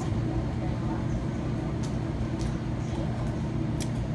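Steady low background hum, like machinery or ventilation, with a few faint clicks.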